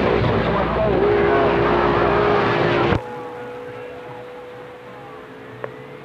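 CB radio receiver audio: loud static carrying a steady whistle, which cuts off suddenly about halfway, leaving quieter band static with a fainter steady whistle.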